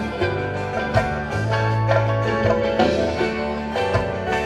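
Live sertanejo band playing an instrumental passage, with electric guitars and bass guitar carrying the tune over a held bass line.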